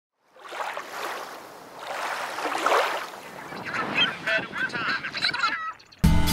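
Gulls crying in a series of short, swooping calls over seaside ambience, after two swells of surf-like noise at the start.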